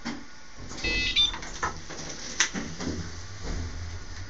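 Otis Gen2 lift car: a brief high-pitched tone about a second in, a sharp click a little later, then a low hum from the drive as the car gets under way.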